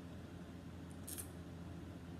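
Quiet room tone with a steady low hum, and one brief faint hiss about a second in.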